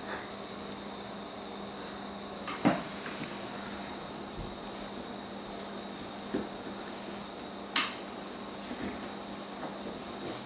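A baby's doorway jumper knocking and clicking as the infant bounces in it on a tile floor: a few scattered knocks, the loudest about two and a half seconds in, and a sharp click near eight seconds, over a faint steady hum.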